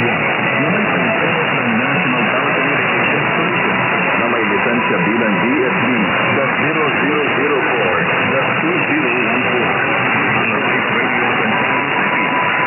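Weak long-distance mediumwave broadcast from DWET on 1179 kHz heard through a receiver in single-sideband mode: a faint, unintelligible voice buried in heavy noise, in a narrow band that cuts off below 3 kHz. A steady whistle comes in near the end.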